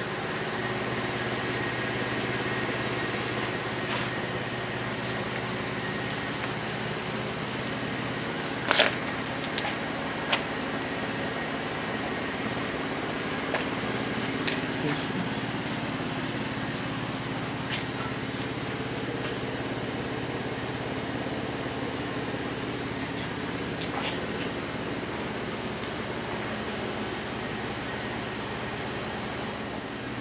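Steady machine hum in the background, with a few sharp clicks or taps; the loudest comes about nine seconds in, and another a second and a half later.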